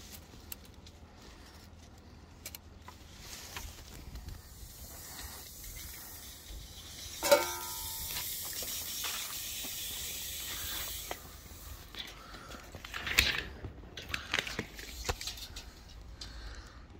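A steel tape measure being handled against timber: small clicks and rattles, with one sharp ringing knock about halfway through, then a hiss lasting a few seconds, and more clicks and rattles near the end.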